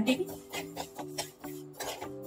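Steel spoon stirring and scraping dry spice seeds (fennel, fenugreek and mustard) in an iron kadhai as they dry-roast to drive off moisture, in short scrapes. Background music with steady held notes plays throughout.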